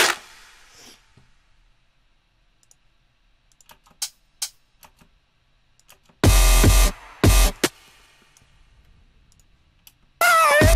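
Electronic drum samples played back from a music-production session: a hit dying away at the start, a few quiet mouse clicks, then two short loud drum bursts with heavy low end about six and seven seconds in.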